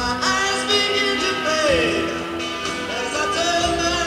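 Live rock band playing an instrumental break, with sustained lead notes over the band and a lead line that slides down in pitch about halfway through.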